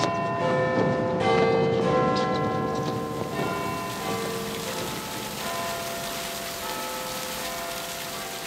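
Bells ringing, their strikes overlapping and dying away over a steady hiss. The peal is loudest at first and gradually softens.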